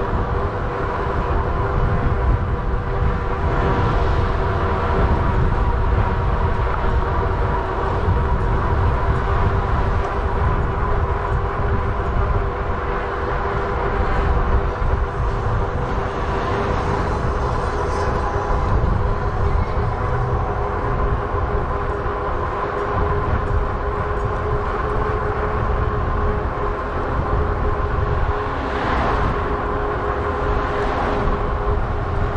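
Riding noise from a Lectric XP folding e-bike moving at a steady pace: wind rumbling on the microphone and tyre noise, with a steady whine held throughout.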